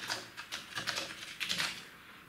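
Laptop keyboard being typed on: a quick, irregular run of key clicks as a short word of code is entered.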